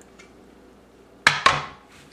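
Two quick clattering knocks of metal cookware being handled, about a quarter second apart, each ringing briefly, about a second in.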